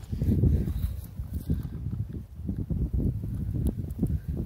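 Wind rumble and handling noise on a phone's microphone as it is carried and swung about, with irregular soft footsteps through grass and dry leaves.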